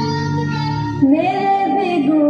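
Young female voices singing a slow song with long held notes; the tune moves to a new held note about a second in.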